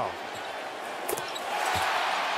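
A basketball thumping off the rim and the hardwood floor on a made free throw, with the arena crowd's cheer swelling about a second and a half in.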